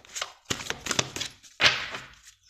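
Oracle cards being shuffled by hand: a run of quick card clicks, then a louder swish of cards sliding together near the end.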